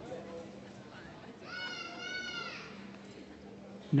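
A small child in the audience gives one long, high-pitched, wavering cry about a second and a half in, heard faintly across a large hall with a steady low hum.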